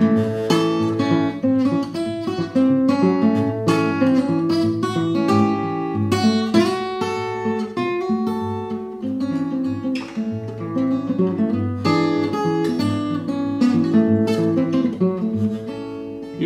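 Acoustic guitar played solo in an instrumental break between verses of a folk-blues ballad: picked melody notes ringing over a steady bass line.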